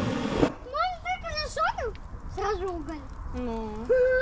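A portable butane gas torch hissing as it lights firewood in a kettle grill, cut off abruptly about half a second in. After that comes a high-pitched voice with short, rising and falling phrases.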